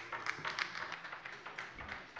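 Applause from part of the chamber: many overlapping hand claps, thinning toward the end.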